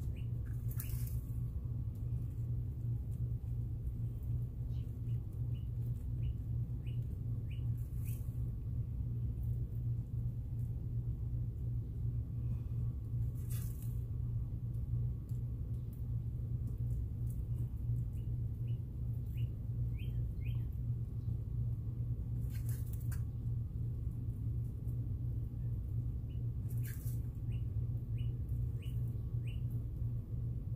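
A steady low hum throughout, with faint high chirps in short runs of four to six, several times over. A few brief soft scratchy clicks come between them.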